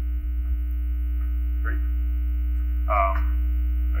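A steady low electrical hum, with a faint buzz of fixed tones over it, runs unchanged under brief speech.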